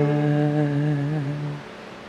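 Church music ending: a single held final note or chord at the close of a sung post-communion canticle, steady in pitch, dying away about one and a half seconds in and leaving only faint room noise.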